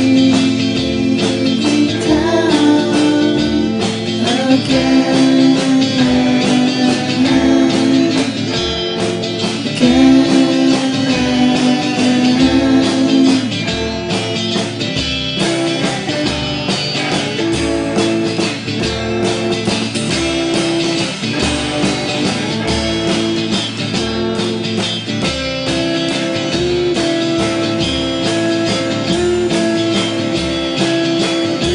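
Electric guitars playing an instrumental piece, with long sustained melody notes over a steady low pulse.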